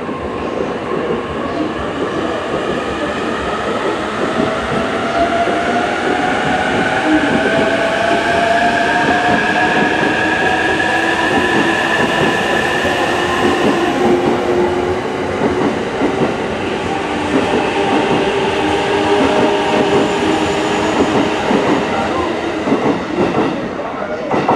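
JR East E233-3000 series electric multiple unit pulling out and gathering speed, its traction-motor whine rising steadily in pitch over the first half, over the continuous noise of wheels on rail as the cars roll past.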